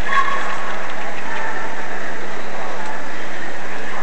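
Steady hall din with a constant low hum and faint, indistinct voices.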